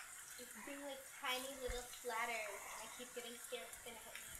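Eggplant slices deep-frying in hot vegetable oil, a faint steady sizzle, with quiet voices speaking over it about one and two seconds in.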